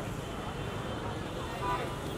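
Busy street ambience: a steady hum of traffic with indistinct voices of people close by, one voice briefly louder near the end.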